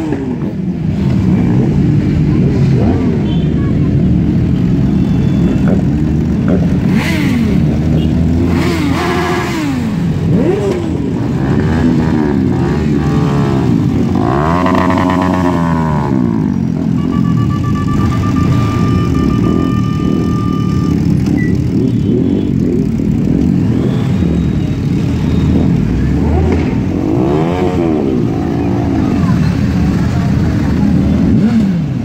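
Several heavy sport motorcycles idling, their riders blipping the throttles so the engine note repeatedly rises and falls, with a couple of longer revs.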